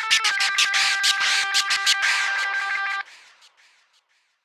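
Instrumental ending of a Turkish rap song: held chord notes over a steady drum beat, which stop abruptly about three seconds in and die away to silence.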